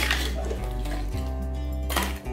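A metal spoon clinking and scraping against a clay pot while thick crab gravy is stirred, with one clink at the start and another near the end. Steady background music plays underneath.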